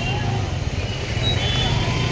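Busy street ambience: a steady low rumble of road traffic with faint voices of passers-by.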